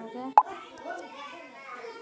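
Children's voices talking in the background, with one sharp, loud click a little under half a second in.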